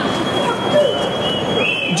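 Loud city street noise with a thin steady high-pitched tone and short squealing tones near the end, over faint distant voices.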